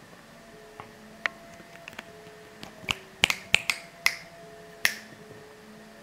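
A run of about eight sharp clicks, irregularly spaced and bunched in the middle, over low background noise.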